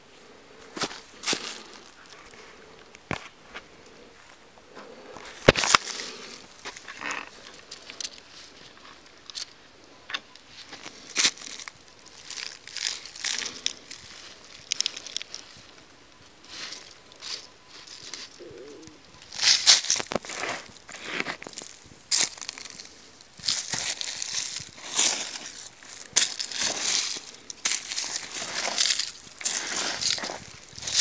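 Dry leaves and loose soil crunching and rustling, in scattered crackles at first and more densely from about two-thirds of the way in.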